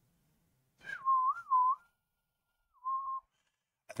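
A person whistling idly to himself: a short wavering phrase that dips twice in pitch about a second in, then one brief held note near the end.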